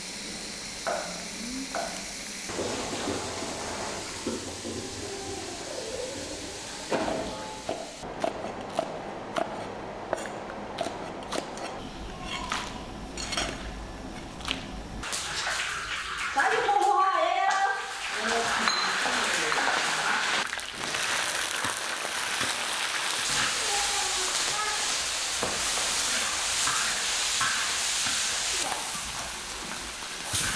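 Preserved mustard greens (yancai) and green chilies stir-frying in a hot wok: a steady sizzling hiss over the second half, starting with a sudden surge just past the middle as the food goes into the pan. Scattered clicks and small knocks of kitchen prep come before it.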